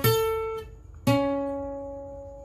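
Yamaha APX 500 II acoustic guitar with a capo, single melody notes picked on the 4th string around the 9th fret: one note at the start, cut short after about half a second, then another about a second in, left ringing and slowly fading.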